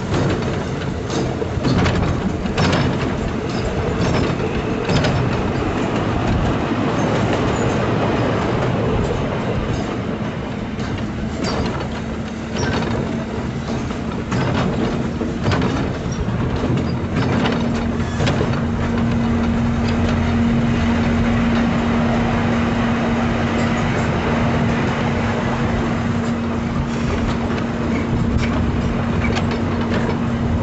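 A small-gauge park train running along its track, heard from aboard: a steady rumble with irregular clicks from the wheels on the rails. A steady hum comes in about twelve seconds in and grows louder a few seconds later.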